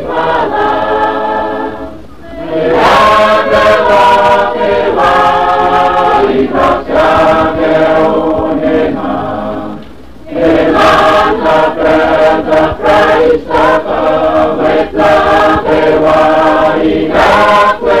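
A mixed choir singing a hymn in Kosraean, in sustained phrases, with brief breaks between phrases about two seconds in and about ten seconds in.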